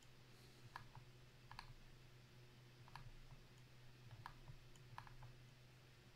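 Faint clicks of a computer mouse, about ten of them and mostly in close pairs, over a low steady hum, as a web page is scrolled.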